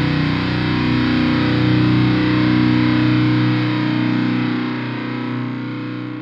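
A distorted electric guitar chord held and left ringing out at the end of a hardcore song. The lowest notes drop away about three and a half seconds in, and the ringing slowly fades.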